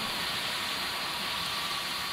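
Penberthy Model 328AA live steam injector running steadily, a constant hiss as it feeds water from a bucket into the boiler. It is working smoothly, still drawing water rather than air.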